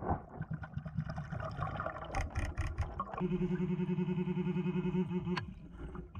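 Underwater scuffling and bubbling noise with a few sharp clicks, then about three seconds in a steady, rapidly pulsing low buzz starts from a handheld underwater metal detector probe signalling on metal, cutting off shortly before the end.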